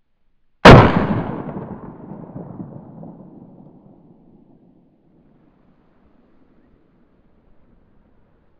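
A single .22 Short round-nose shot from a North American Arms mini revolver, just under a second in, followed by a long echo dying away over the next few seconds.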